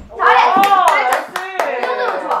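Hand clapping, a quick run of sharp claps, mixed with excited exclaiming voices.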